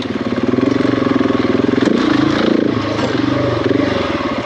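Off-road motorcycle engine running at low revs under load, its revs rising and falling as the throttle is worked over rough ground. A single sharp knock comes near the middle.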